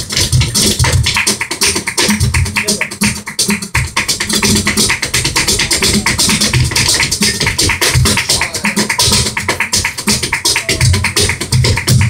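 Live flamenco guitar with dense, rapid percussion from a dancer's footwork, hand-clapping and cajón, without singing.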